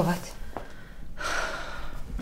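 A woman drawing in a quick, audible breath about a second in, a pause between bouts of stuttering 'ta, ta, ta'.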